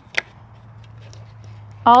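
A pause in speech filled by a steady low background hum, with a short click about a fifth of a second in; a woman's voice resumes near the end.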